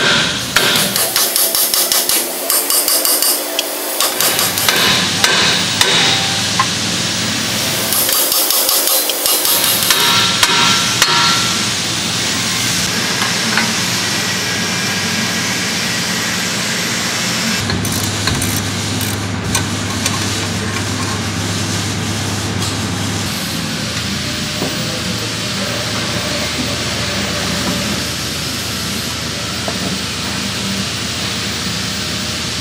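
Repeated hammer blows on a truck's steel front steering knuckle, knocking the upper and lower ball joints loose, over roughly the first twelve seconds. After that the blows stop and a steady noise carries on.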